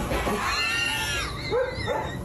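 A Dalmatian whining: one high, arching whine lasting under a second, then two short, lower yips near the end.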